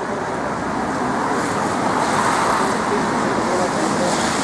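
Street traffic on a wet road: a steady hiss of tyres and engines that swells a little around the middle, with faint voices mixed in.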